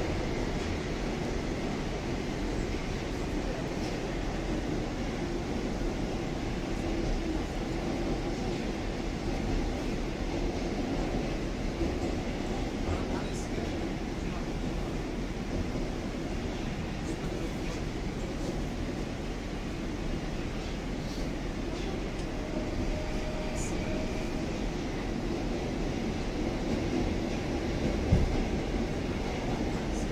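Inside a Rusich (81-740/741) articulated metro carriage while the train runs between stations: steady running noise from the wheels and running gear, with a single knock near the end.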